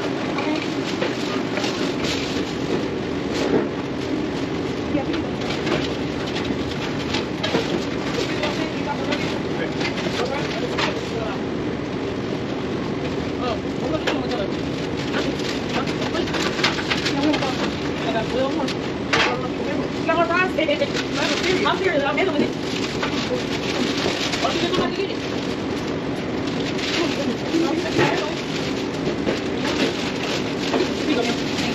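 Fast-food restaurant kitchen noise: a steady hum with scattered clatter and indistinct staff voices.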